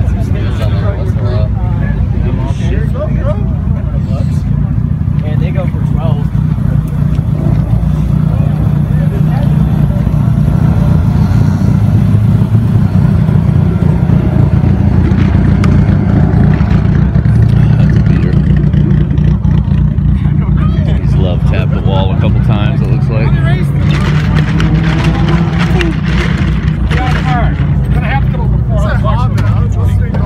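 Car engines running with a steady low drone, with people talking in the background.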